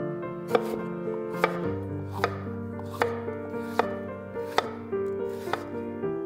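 Chef's knife slicing a red bell pepper into strips on a wooden cutting board: seven sharp knocks of the blade on the board, evenly spaced a little under a second apart, over soft piano music.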